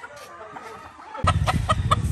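Chickens clucking: a few short, sharp clucks in the second half over a low rumble, after a quieter first second.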